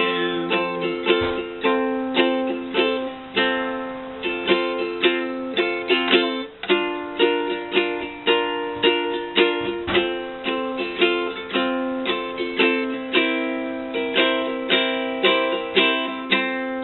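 Ukulele strummed in waltz time in an instrumental passage, with no singing, moving through F, B-flat and C7 chords. The strums fall at a steady, even pulse.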